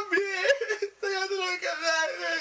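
A man's exaggerated, theatrical crying: long, wavering, high-pitched wails, broken by a short gasp about a second in.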